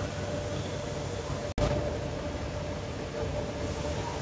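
Steady foundry machinery noise: a low rumble under a hiss with a faint hum, broken by a momentary dropout about one and a half seconds in.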